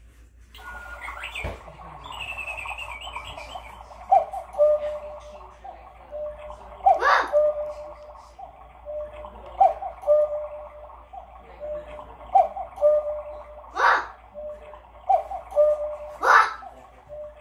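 Chalet-style cuckoo clock calling the hour: the cuckoo's two-note "cuck-oo", a higher note falling to a lower one, repeats about every three seconds, with a few sharper clicks from the mechanism among the calls.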